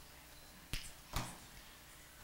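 Two sharp clicks about half a second apart, over quiet room tone.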